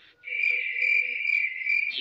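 A steady, high-pitched chirring tone that starts a moment in and cuts off near the end, with faint higher chirps over it.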